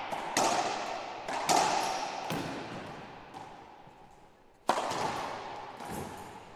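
Racquetball rally: about five sharp cracks of the ball off racquets and the court walls, irregularly spaced, each ringing on in the enclosed court's echo.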